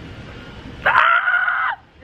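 A woman's high-pitched excited squeal, held on one pitch for about a second in the middle and then cut off.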